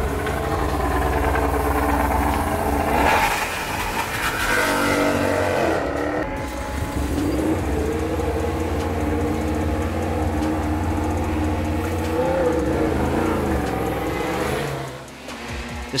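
Yamaha YZR-M1 MotoGP bike's inline-four engine running with a steady low rumble, revved up and down a few times, once about three to six seconds in and again near the end.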